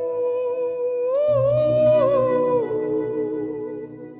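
Male singer's wordless vocal: one long held note that wavers and bends about a second in, then falls and stops a little past halfway, over soft sustained band accompaniment with a low bass note coming in about a second in.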